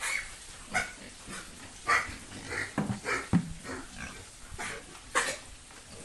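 Pigs in a pen giving short, rough calls, about ten of them at uneven intervals, the loudest near the start, about two seconds in and about five seconds in.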